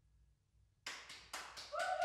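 Near silence, then clapping from a few people starts suddenly about a second in, with a voice calling out near the end.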